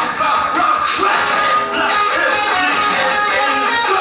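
Live rock band playing loud and steady, electric guitars strumming over bass and drums.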